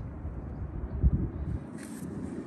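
Low rumble of wind and handling noise on a handheld microphone, with a soft thump about a second in and a brief hiss near the end.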